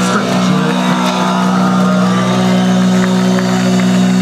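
Amplified electric guitar and bass holding a steady, droning note through the PA, the sound of a chord or note left ringing out at the end of a song.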